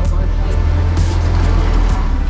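A front-engine Porsche driving past close by, its engine's low rumble building and loudest toward the end, over background music.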